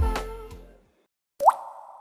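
Background music ending on a last beat that fades out within the first second. After a brief silence, a short rising 'bloop' pop sound effect about a second and a half in, trailing off.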